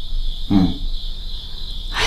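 Crickets trilling steadily in one even, high-pitched band as night ambience, with one short voice-like sound about half a second in.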